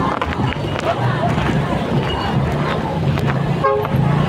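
A vehicle horn gives one short toot near the end, over steady traffic noise with an engine running.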